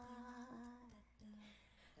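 A woman softly humming one held note into a microphone, which trails off about a second in, followed by a brief fainter note.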